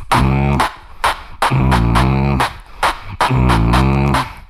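Solo beatboxing into a cupped handheld microphone: deep, buzzing vocal bass notes that bend in pitch, broken up by sharp snare and hi-hat clicks in a heavy rhythm.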